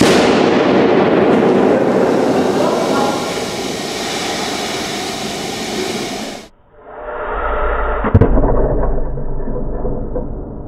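A shaving-foam aerosol can burst open by a power hammer press: pressurised foam and propellant blasting out in a loud hiss that slowly dulls and then cuts off suddenly. After that comes a duller, lower rumble with one sharp knock about eight seconds in.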